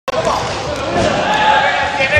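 Balls bouncing on a gym floor amid the voices of a group of people, with a shout of "yeah!" about a second in.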